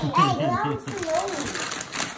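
Indistinct voices speaking, with no clear words.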